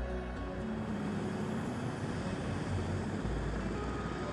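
A four-wheel-drive utility vehicle towing a loaded trailer drives by, a steady rush of engine and tyre noise. Soft background music fades out about half a second in.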